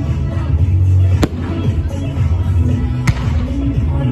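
Aerial fireworks going off with two sharp bangs, about a second in and about three seconds in, over music with a steady low bass line.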